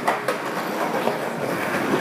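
Skateboard wheels rolling on a rough concrete sidewalk, a steady rumble, with a sharp clack just after the start.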